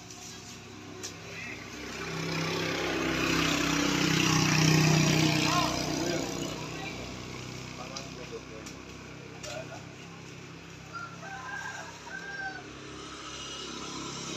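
A motor vehicle passes by on the road, its engine growing louder to a peak about five seconds in and then fading away. Short high calls come near the end.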